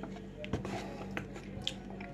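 A person chewing a mouthful of chocolate-filled bun, with a few short, sharp clicks over a steady low hum.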